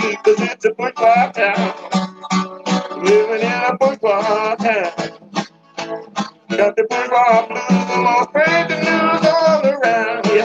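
Twelve-string acoustic guitar played with rapid plucked notes, with a man's voice singing over it.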